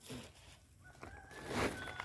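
Faint, thin chicken calls in the background, short ones about a second in and again near the end. A brief rustle around a second and a half in, from chopped silage being forked into a sack.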